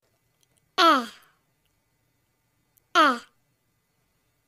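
A voice saying the short vowel sound 'eh', the letter sound for 'e', twice, about two seconds apart; each is a brief syllable that falls in pitch.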